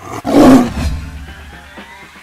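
Tiger roar sound effect over background music, loud and brief: it swells about a quarter of a second in, peaks around half a second and fades within a second.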